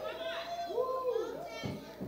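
Faint voices of the congregation responding in the sanctuary during a pause in the preaching.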